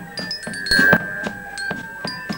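Marching band drum corps playing: crisp snare drum strokes under short, high, ringing bell-like notes, with a louder hit a little under a second in.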